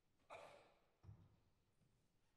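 Near silence in a concert hall, broken by a faint, brief breathy noise about a third of a second in and a soft low thump about a second in.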